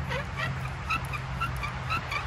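Wooden spindle squeaking against the fireboard as a foot-powered spring-pole lathe drives it back and forth for a friction fire: short, high squeaks repeating about three to four times a second, over a steady low hum.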